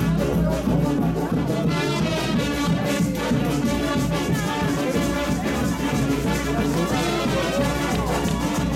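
A street brass band playing a lively tune on the march, with trombones and trumpets over a steady drum beat.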